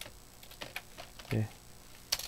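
Computer keyboard keys clicking: several irregular, fairly faint key presses while code is navigated in an editor.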